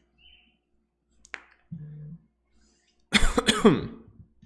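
A man's short burst of laughter near the end, the loudest sound, with the pitch falling. Before it, a single sharp click and a brief low hum.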